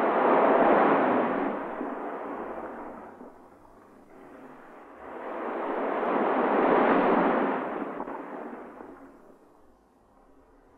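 Two long swells of rushing noise with no music or voice, each rising and then fading away over a few seconds: the first peaks about a second in, the second near seven seconds.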